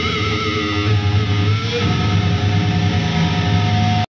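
Death metal band playing live: distorted electric guitars, bass guitar and drums. A lead guitar note wavers in vibrato in the first half, then a steady held note rings over the fast, heavy low end.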